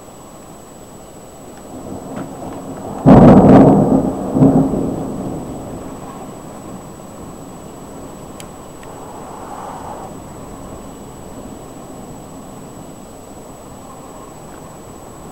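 A thunderclap from a nearby lightning strike: a low rumble builds, then a sudden loud crack about three seconds in, a second clap a moment later, and a rumble that dies away over a few seconds.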